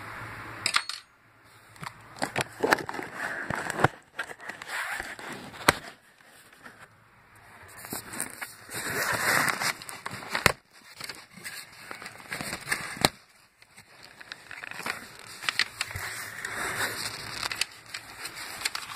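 A cardboard shipping box being opened by hand: cardboard flaps scraping and rustling in irregular bursts, with sharp snaps and crackles. Near the end kraft packing paper inside rustles as a hand reaches in.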